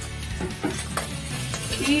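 Wooden spoon stirring and scraping boiled potato cubes into fried chorizo in a pan on the burner, with the pan sizzling.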